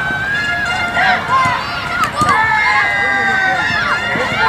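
Several children's voices shouting and calling out over one another on a football pitch, with long drawn-out high-pitched cries, the longest from about two seconds in to near the end.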